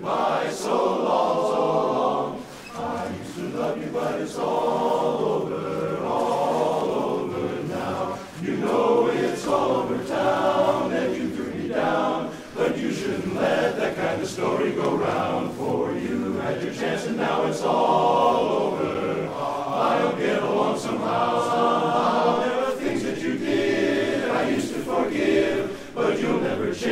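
A large men's barbershop chorus singing a cappella in close harmony, sustained chords with short breaks between phrases.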